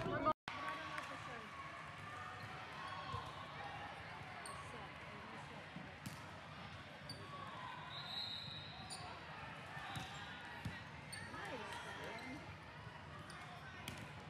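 Volleyball match heard in a gymnasium: faint voices of players and spectators, a few thuds of the ball and short high squeaks of shoes on the hardwood court.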